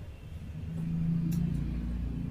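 A low droning rumble that swells over the first second and then eases. One sharp snip of hair-cutting scissors through wet hair comes just past the middle.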